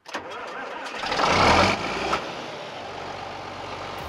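John Deere 4640 tractor's diesel engine starting: it cranks, catches about a second in with a loud surge, then settles to a steady idle.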